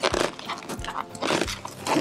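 Inflated latex balloons squeaking and rubbing against each other as hands work among them, in several short bursts.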